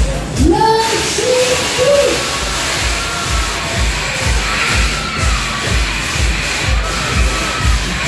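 Loud dance music from a fairground ride's sound system with a steady, heavy beat. Riders shout and scream over it, most plainly in the first couple of seconds.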